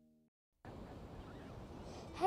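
A faint held music chord fades out, a moment of silence follows, and about half a second in a steady noise of ocean surf and wind on a beach begins.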